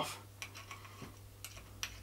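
A few faint, scattered metallic ticks from a 4 mm Allen key turning the screws of a Saber Tactical 60mm buddy bottle bipod clamp as they are slackened, the clearest near the end.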